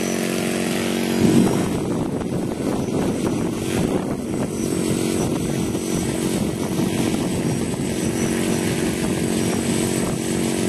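1/3-scale Fokker DR1 model's propeller engine running, ticking over steadily, then opened up sharply about a second in and held at high power.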